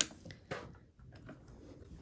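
A sharp click at the start and a smaller one about half a second in, then faint rustling of fabric being handled at a sewing machine that is not running.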